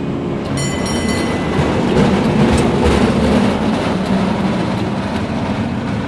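Gondola cabin's carriage rumbling and clattering along the haul rope as it nears and runs past a support tower's sheaves, swelling to its loudest in the middle. A short high whine sounds about a second in.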